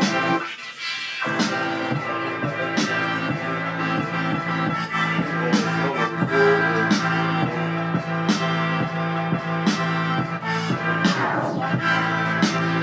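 An electronic hip-hop beat playing back from a producer's pad controller and DAW session: a held bass tone under steady, evenly spaced drum hits. The low end drops out briefly about half a second in and returns, and a sweeping sound comes in near the end.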